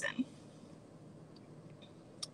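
A woman's voice ends a word right at the start, then faint background hiss with a few small soft ticks.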